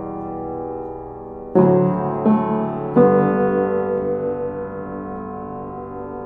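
Slow background piano music: sustained chords that fade away, with new notes struck about a second and a half in, again a little later, and at about three seconds, then left to decay.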